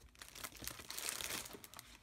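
Clear plastic packaging around a pack of glitter paper crinkling and rustling in the hands, in irregular crackles.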